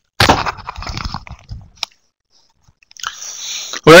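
Irregular crackling and rustling close to a microphone for about a second and a half, a single sharp click, then a short hiss just before speech begins.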